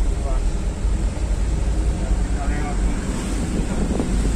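Steady low rumble of a car driving, heard from inside the cabin, with faint voices around the middle.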